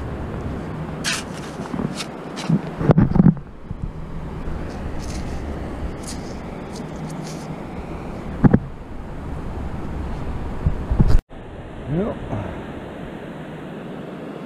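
Steady wind rumble on the microphone with surf behind it. Now and then a metal sand scoop scrapes and clicks as it digs into wet beach sand.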